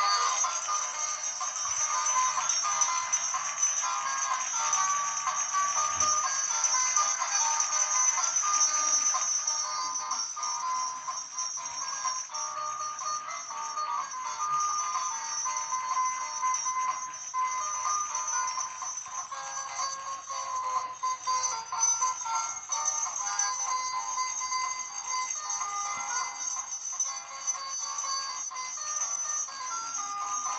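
A Gemmy animated ribbon door greeter from 2005 playing a sung song through its small fabric-covered button speaker. The sound is thin and tinny, with no bass.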